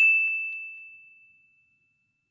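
A single high, clear ding sound effect, ringing out and dying away over about a second and a half.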